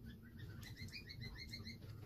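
A small bird chirping faintly: a quick run of about ten short, rising chirps in the middle, over a low steady room hum.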